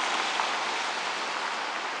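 Steady hiss of outdoor street ambience, even and without distinct events, fading slightly.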